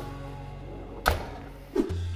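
Background music, with one sharp thunk of the oven door shutting about a second in.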